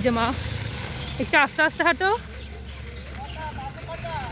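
A high-pitched voice in short, wavering phrases: one right at the start, then four quick syllables a little over a second in, over a steady low rumble.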